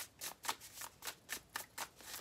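Wild Unknown Tarot deck with a matte, linen-like finish being shuffled by hand: a quick, steady run of soft card-against-card strokes, about four a second.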